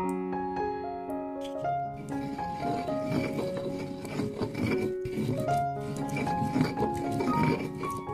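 Background music with a light stepped melody. Underneath it, from about two seconds in, a stone pestle rubs and grinds wet turmeric spice paste against a stone mortar.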